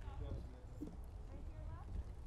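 Footsteps of heeled sandals knocking on a stage platform as a person walks across it, over a steady low rumble and faint distant voices.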